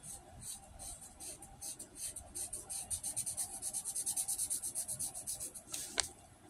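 Quick repeated scratching or rubbing strokes, several a second, growing denser and louder through the second half and ending with one louder stroke.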